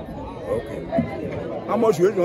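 Men talking, with voices overlapping in chatter.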